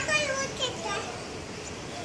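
A child's voice calling out loudly and high-pitched in the first second, over steady outdoor background noise.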